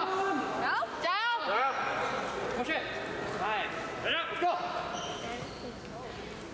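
Rubber-soled shoes squeaking on a gym floor: several short, rising-and-falling squeals in a large echoing hall, a cluster of them about a second in and more in the second half.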